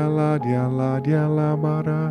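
A man's voice sings long, held wordless notes in tongues (glossolalia), stepping from pitch to pitch, over soft background music.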